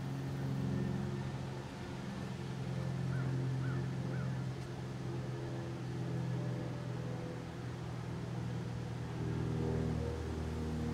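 Steady low mechanical hum carrying a few pitched tones, slowly swelling and easing in level. Three short chirps sound about three to four seconds in.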